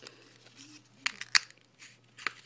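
Fingers picking at a small folded paper note sealed with tape: a few short, sharp crinkles and clicks of paper and tape, the loudest a little over a second in, between quiet stretches.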